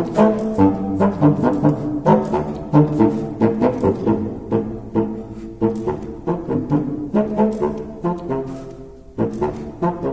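Unaccompanied contrabassoon playing a funky dance tune in quick, short, detached low notes with a steady pulse. Near the end the line thins out briefly, then the notes pick up again.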